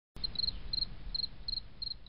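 Cricket chirping steadily: short high chirps of three or four quick pulses, about three a second, over a faint low rumble.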